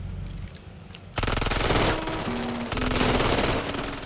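Rapid automatic gunfire in one long burst lasting about two and a half seconds. It starts about a second in, after a low rumble, and stops shortly before the end.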